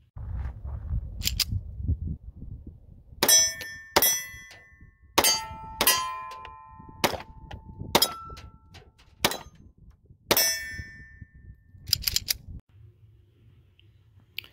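A Colt 1903 Pocket Hammerless in .32 ACP firing a string of about ten shots, roughly a second or so apart, with steel targets ringing after several of the hits. Low wind rumble on the microphone runs under the shots until near the end.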